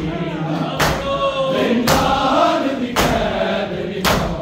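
Men's voices chanting a noha (Shia lament) together, with the group beating their chests in unison: three sharp strikes about a second apart.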